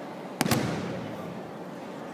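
Judo throw landing on the tatami: the thrown judoka's breakfall makes two sharp slaps about a tenth of a second apart, echoing in a large hall.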